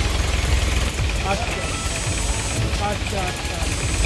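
Workers' voices in the background over a steady low rumble, with a short spoken word near the end.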